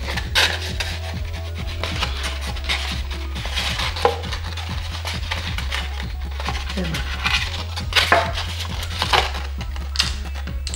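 Handling sounds of strips of tape being pressed down over thin motor wires on a foam airframe: short rubs, scratches and rustles against a wooden workbench, over steady background music.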